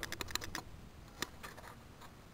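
Faint, irregular light clicks: a quick run of them in the first half-second, one sharper click a little past one second, and a few weaker ones after it.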